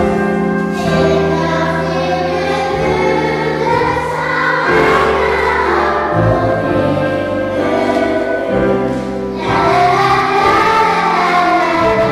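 Children's choir singing in unison, with instrumental accompaniment holding steady low notes beneath the voices.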